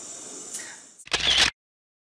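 Faint room tone fading out, then a single camera shutter click about a second in, short and sharp, cut off abruptly into dead silence.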